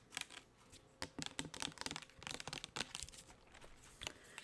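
Long acrylic nails tapping and scratching on a plastic foaming hand soap bottle: a quick, uneven run of clicks and taps.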